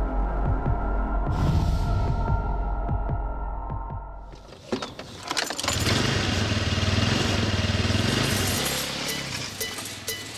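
Soundtrack music with a throbbing low pulse under sustained tones. About halfway through it gives way to a denser, noisier passage over a steady low hum.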